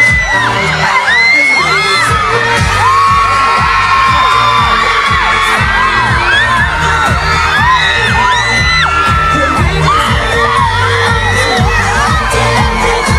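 Pop dance music with a steady beat playing loud for a dance routine, while a crowd of children and fans scream and whoop over it throughout.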